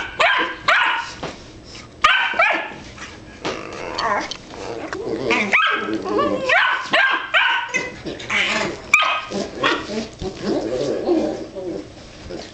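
Dogs vocalizing during mouthy face-to-face play: a busy, irregular string of short yips, whines and barks, with lower, longer sounds near the end.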